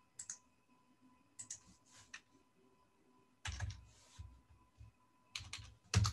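Computer keyboard keystrokes, quiet and irregular, in short clusters as a number is typed into a spreadsheet. A few strokes land heavier, with a dull thud, about halfway through and again near the end.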